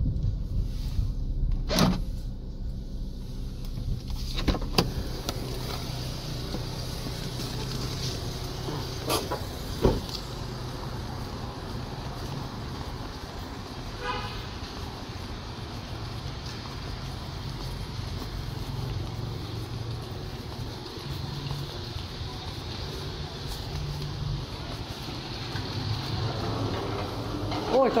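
Steady low hum of a car, with a few sharp knocks scattered through it, the loudest about ten seconds in.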